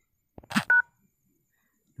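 A single short touch-tone (DTMF) beep from a smartphone dialer keypad as the # key is pressed: two pitches sounding together, about three-quarters of a second in, just after a brief soft noise.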